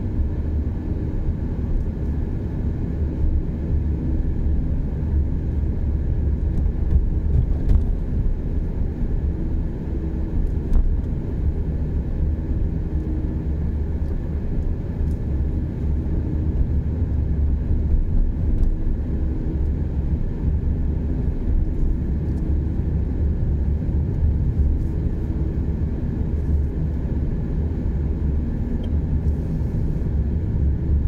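Steady low rumble of an automatic car driving at an even city speed, engine and tyre noise heard from inside the cabin.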